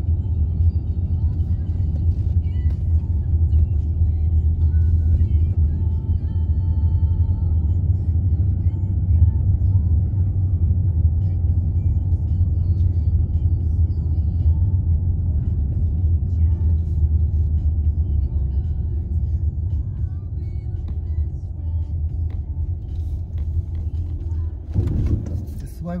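Steady low rumble of a car's engine and tyres heard from inside the cabin while driving along a winding road.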